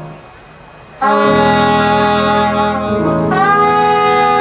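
Live jazz horn section of trumpet and saxophone. After a short near-pause, the horns come in together about a second in on a loud held chord, then move to a new chord a couple of seconds later.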